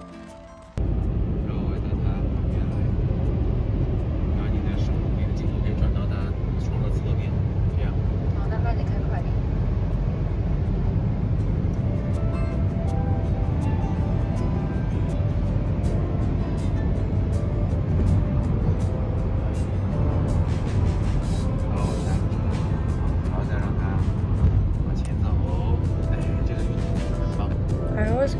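Loud, steady rumble of wind and road noise inside a car moving at highway speed, starting abruptly about a second in.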